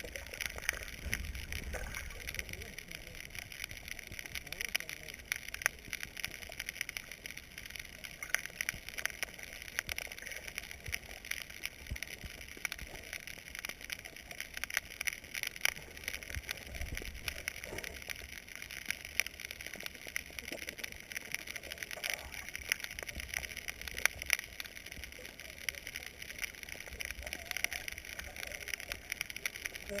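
Underwater sound over a coral reef, heard through an action camera's waterproof housing: a steady hiss with frequent irregular sharp clicks and crackles, and a low rumble that swells now and then.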